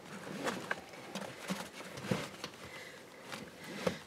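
Soft rustling of seat-belt webbing and car-seat fabric with scattered light clicks and taps, as a vehicle seat belt is fed through a child car seat's rear-facing belt path.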